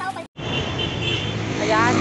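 Roadside traffic by a highway: a steady engine hum, with motorcycles passing. The sound drops out for a moment about a third of a second in.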